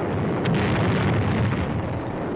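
A shell explosion on an old 1940s film soundtrack: a sharp crack about half a second in, then a long low rumble.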